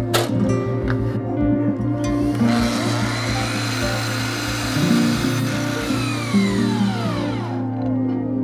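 Electric miter saw starting up about two and a half seconds in, its motor and blade running through a miter cut in a piece of trim molding, then winding down with a falling whine near the end. Background music plays throughout.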